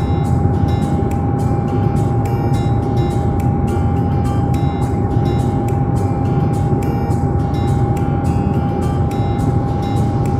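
Steady drone of a turboprop airliner's engines and propellers heard inside the cabin: a deep rumble with one constant tone above it. Background music with a steady beat plays over it.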